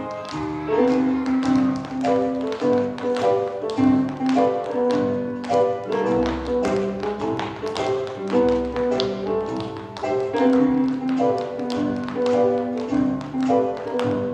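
Tap shoes striking a stage floor in quick rhythmic clicks as three dancers perform together, over recorded music with a melody and occasional deep bass notes.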